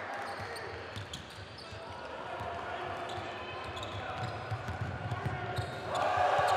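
Basketball game on court in an almost empty hall: the ball bouncing and feet thudding on the floor, short sneaker squeaks, and players' voices, with no crowd noise.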